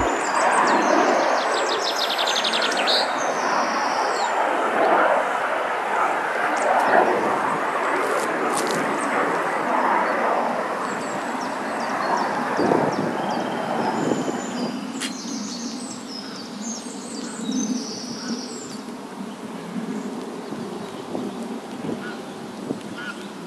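Aircraft noise from a nearby airport: a steady rushing that slowly fades. Small birds chirp and twitter over it in short spells.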